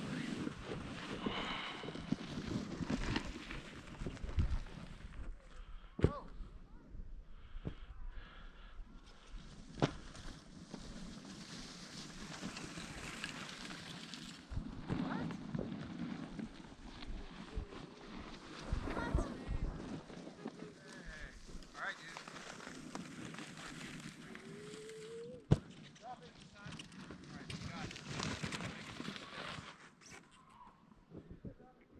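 Wind and snow noise rumbling on a helmet-mounted camera's microphone, with a few sharp knocks and faint, muffled voices.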